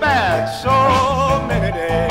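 Electric Chicago blues band recording from 1968. A high lead line swoops down steeply, then holds one long note over a steady, rhythmic bass line.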